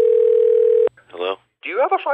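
A telephone dial tone, one steady tone over a phone line, that cuts off just under a second in. A brief voice follows, then phone-call speech.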